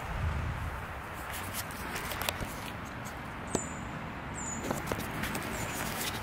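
Quiet outdoor background hiss with a brief low rumble at the start and a few faint, sharp clicks scattered through it.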